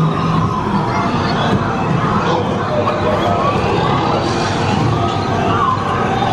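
Themed jungle soundscape of a dark ride: many overlapping short gliding, whistle-like creature calls over a steady rushing background.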